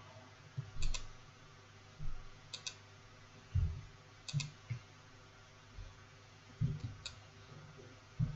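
Computer mouse buttons clicking: a click pair about every two seconds, each a quick press and release, with a single click near the end. Low dull knocks fall between the clicks.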